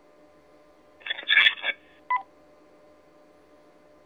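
Electronic radio tones, typical of a DMR two-way radio: a quick cluster of high beeps about a second in, then a short two-note blip half a second later. A faint steady hum runs underneath.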